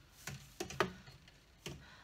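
A few light, faint clicks from the metal trays of a freeze dryer being touched and shifted on their shelf rack.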